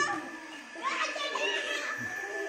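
Young children's voices, shouting and calling out while they play-wrestle.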